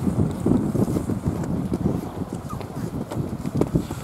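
Wind buffeting the microphone: an irregular low rumble with uneven gusting thumps.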